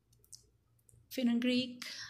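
About a second of near silence broken by a few faint clicks, then a woman's voice begins speaking.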